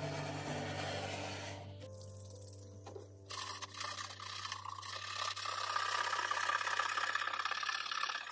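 Small stiff brush scrubbing softened varnish out of a carved wooden applique, a continuous scratchy scrubbing that gets louder from about three seconds in, over steady background music.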